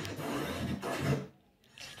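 A noisy, hissing 'space sound' (a sonification billed as a sound of one of Jupiter's moons) playing from a device speaker, with a low rumble under it; it cuts off suddenly about a second and a third in.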